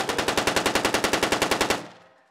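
Automatic rifle fire: one sustained burst of rapid, evenly spaced shots, about a dozen a second, that stops shortly before the end.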